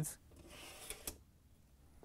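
A GE dishwasher's upper-rack metal slide is drawn out along its rail on a new roller bearing cage. There is a faint, brief sliding rub, then a sharp click about a second in.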